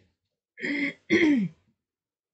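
A woman clearing her throat twice in quick succession, the second a longer voiced sound that falls in pitch.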